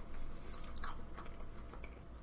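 Faint chewing of a fried, battered chicken chip, with a few soft crunches.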